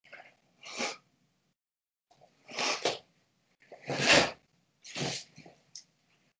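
A karateka's short, forceful exhalations, six or seven brief bursts of breath pushed out with his techniques, the loudest about four seconds in. The sound cuts to dead silence between the breaths, as through a video call.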